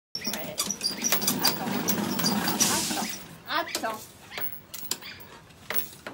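A Staffordshire Bull Terrier's claws clicking and scrabbling on the wooden slats of a manual slat dog treadmill, with short high squeaks, for the first three seconds. A brief voice follows just past the middle, and it is quieter after that.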